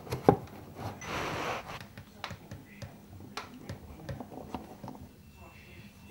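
Handling noise: a sharp knock, then a brief rustle, followed by scattered light clicks and taps as objects are moved about by hand.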